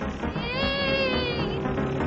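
Cartoon background music with one high, drawn-out, meow-like cry that rises and then falls, lasting about a second.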